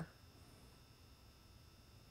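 Near silence: room tone with a faint steady high-pitched hum.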